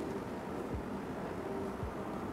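Quiet, steady background hiss (room tone) with a couple of soft, low thumps.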